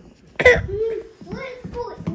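A small child's voice: a sudden loud cough-like burst about half a second in, then a few short vocal sounds.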